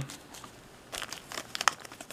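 Plastic and foil packaging bags crinkling as they are handled, a scatter of small crackles starting about a second in.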